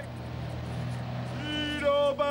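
A man's newspaper-seller's street cry in long, held notes, starting a little over halfway in, over a low steady rumble of street traffic.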